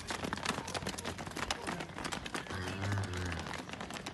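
Many cattle hooves clattering on a paved street as a herd runs past, a dense stream of hard knocks. About two and a half seconds in, a low call lasting about a second sounds over the clatter, typical of a cow lowing.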